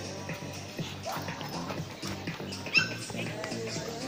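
A dog gives one short, high-pitched bark about three quarters of the way in, the loudest sound here, over steady background music and crowd chatter.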